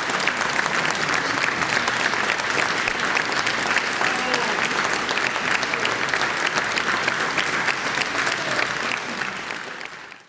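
Audience applauding steadily with dense, irregular hand claps, fading out near the end.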